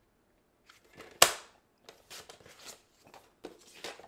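Tabletop paper trimmer cutting a sheet of patterned paper. There is one sharp click about a second in, then several short, soft scraping and rustling sounds as the blade and paper are worked.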